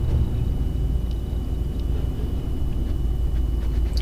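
A 2009 Dodge Ram 1500's 5.7 L Hemi V8 idling steadily, a low rumble heard from inside the cab.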